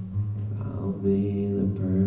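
Acoustic guitar played live with a steady ringing low pattern, joined about half a second in by a man's voice singing into the microphone.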